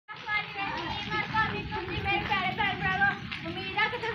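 Several children's high-pitched voices calling and chattering over one another as they play.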